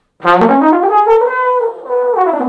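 Trombone playing a smooth slide glissando upward, one continuous sweep rather than separate notes, that reaches a held high note; near the end it breaks briefly and starts gliding back down. It is a range exercise, pushing the upper register with a continuous sound instead of notched notes.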